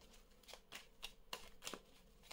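Oracle cards being shuffled by hand: a faint, quick run of soft card flicks, about three a second.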